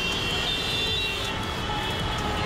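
Road traffic noise from a jammed multi-lane road: a steady rumble of many vehicles with a few held higher tones over it.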